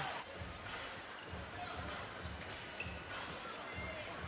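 A basketball being dribbled on a hardwood court: a series of low thuds over the murmur of an arena crowd.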